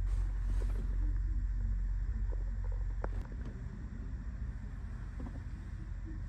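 Hotel room heater running with a steady low hum and rumble; the low rumble drops a little about three seconds in, and there are a few faint clicks.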